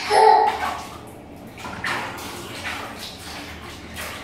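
Water splashed by hand in small plastic tubs: a run of irregular splashes and sloshes. A child's short laugh comes at the very start.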